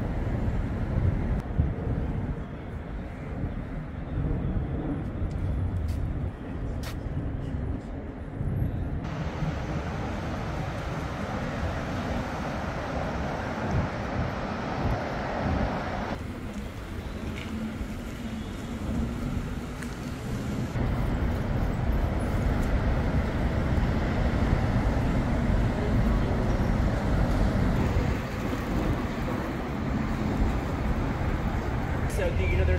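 City street ambience: a steady rumble of traffic and vehicles with faint passing voices. The background changes abruptly several times as one street recording gives way to another.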